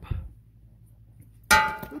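A Model T Ford connecting rod cap drops with a single sharp metallic clang that rings briefly and dies away, about a second and a half in.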